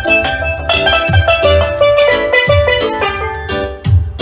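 Steelpan played with two sticks, a quick run of ringing metallic notes over a drum beat with a low thump about every second and a quarter.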